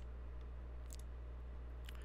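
Three faint computer mouse clicks about a second apart, over a steady low electrical hum.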